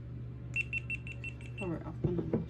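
GoPro action camera beeping: a quick, evenly spaced run of about eight short high beeps lasting about a second.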